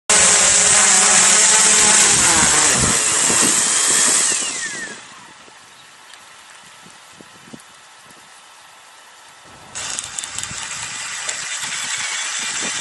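Quadcopter drone rotors running loudly, then spinning down in a falling whine about four to five seconds in. After about five quieter seconds, the drone's electric auger motor starts suddenly near the end and runs steadily, drilling into the soil.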